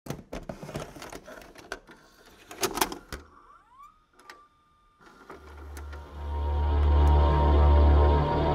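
Clicks and clunks of a VHS player's tape mechanism, then a whine that rises and settles on a steady tone. From about five seconds in, a low droning horror score swells up.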